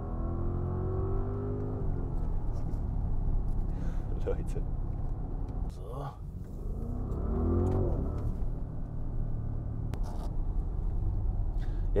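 Audi RS Q8's twin-turbo V8 engine and road noise heard from inside the cabin while driving, a steady low drone. The engine note rises in pitch near the start and again about two-thirds through as the car accelerates.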